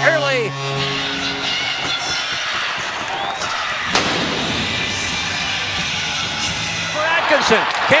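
Arena goal horn sounding steadily over crowd cheering, fading out about a second in. Then a single sharp blast from a ceremonial field cannon firing a blank, a little before halfway, with crowd noise carrying on after it.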